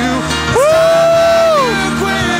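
Live church worship music: a singer slides up into one long high note, holds it, and lets it fall away near the end, over a steady sustained keyboard accompaniment.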